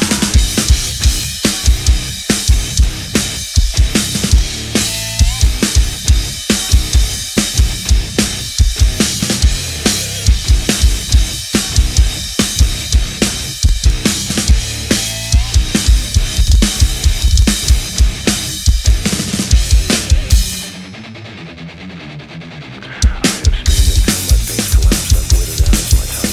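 Acoustic drum kit played hard along to the recorded metal song: fast bass drum strokes, snare hits and crashing cymbals. Near the end the drums stop for about two seconds, leaving only quieter backing, then come back in at full volume.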